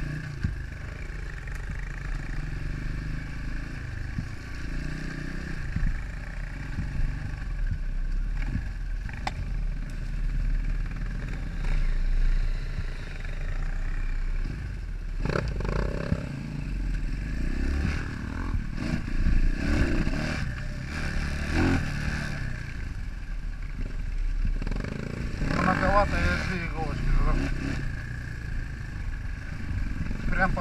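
Enduro dirt bike engine heard close up from the rider's own bike while riding a rough forest trail, its level rising and falling with the throttle.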